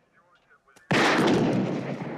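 A single pistol shot about a second in: a sudden, loud crack with a long echoing tail. It is a shot fired into a police car's radio.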